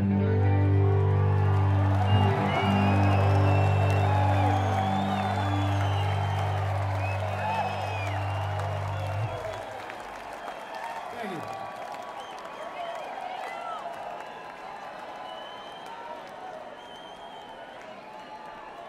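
A rock band's final chord held and ringing, which stops about nine seconds in, under a concert crowd cheering, whistling and applauding. After the chord ends the crowd noise carries on and slowly dies down.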